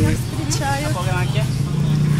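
People's voices talking and laughing over a steady low hum.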